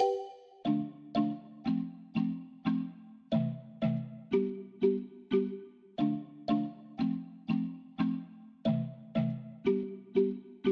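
A plucked-string melodic sample loop in D minor playing back from FL Studio's playlist, pitched down 12 semitones: evenly spaced struck notes, about two a second, each dying away. After the first note the loop drops an octave as playback passes into the pitched-down copy.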